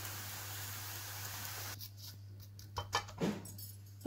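A paratha hissing faintly on a hot iron tawa over a gas burner; the hiss cuts off abruptly just under two seconds in. A few light clicks and taps follow, over a steady low hum.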